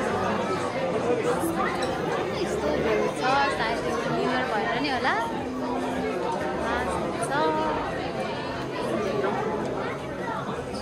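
Chatter of many people talking at once: a hubbub of overlapping voices with no single clear speaker.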